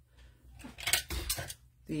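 Cardstock and craft supplies handled on a tabletop: paper rustling, with a short knock about a second in.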